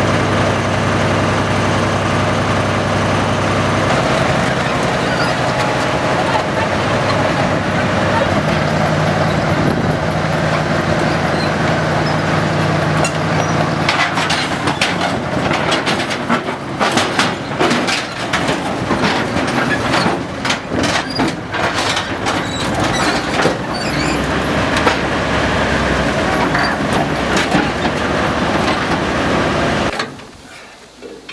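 A heavy vehicle's diesel engine running loud and steady, its pitch stepping up about eight seconds in. Through the second half it is joined by rapid, irregular metal clanking and clatter.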